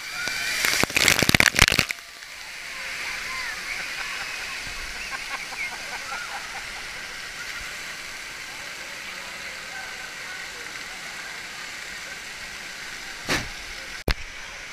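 Water cascading down onto the camera, a loud crackling splash of about a second and a half. Then the steady rush of water in an indoor waterpark hall, with children's distant shrieks and a short burst of noise near the end.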